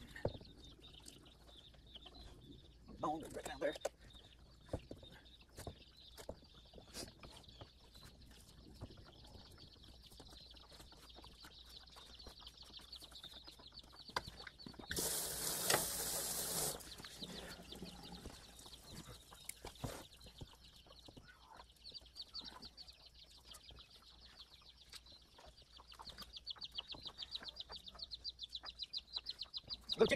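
Faint butchering sounds: small clicks and scrapes of knife work on a snapping turtle carcass, and a tap running at a sink for about two seconds midway. Chickens cluck in the background over a steady high chirring.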